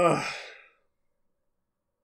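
A man's sigh mixed with a short laugh, its pitch falling, over about the first half-second.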